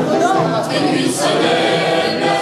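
A group of amateur voices singing together in chorus, a sing-along from song sheets, with held notes and no break.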